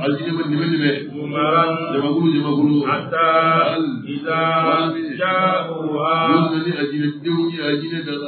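A man chanting devotional verses at a microphone in a melodic recitation, long held phrases with brief breaks between them.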